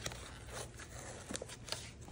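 Faint rustling and a few light clicks from fingers picking at the paper seal and cardboard end of a white Apple product box, over a faint steady low hum.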